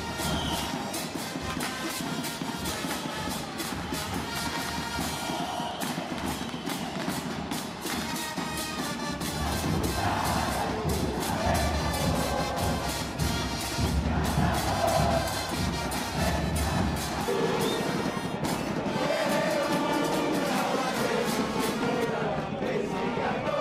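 Football supporters' stand music: a steady drumbeat with a crowd behind it. About ten seconds in it grows louder as a sustained melody, horns or massed singing, joins the drums.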